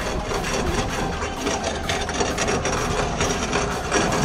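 Kart with a 600 cc Suzuki motorcycle engine rolling over brick paving: a steady, rough rattling from the tyres and chassis on the pavers, with the engine running at low revs underneath.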